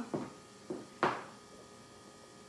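Low steady hum with two brief knocks, a soft one and a louder, sharper one about a second in.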